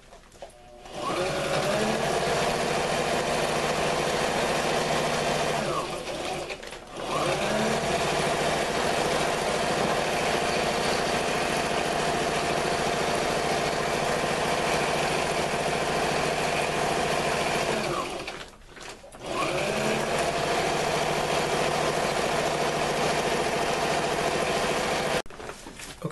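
Electric sewing machine stitching tarp in three long steady runs, its motor speeding up at the start of each run and slowing to a stop twice along the way.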